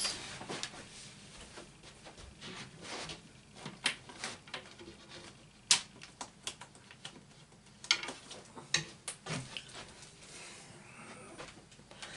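Scattered sharp clicks and light knocks of craft supplies being rummaged through and handled, over quiet room tone, the loudest click about halfway through.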